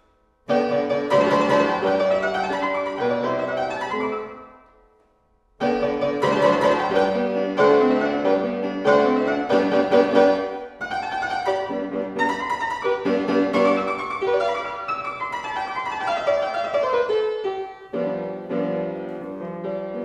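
Solo classical-era keyboard music played on a period keyboard instrument, with quick running figures and chords. The music enters about half a second in and breaks off into silence for about a second around the fifth second before resuming. Near the end it settles on a held chord that fades away.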